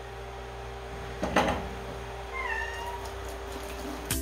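Siamese cat meowing, one short faint call about two and a half seconds in. A dish knocks once in the sink about a second and a half in, over a steady low hum.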